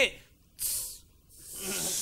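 A short hiss of breath about half a second in. After a brief silence a breath is drawn in, growing louder just before speech resumes.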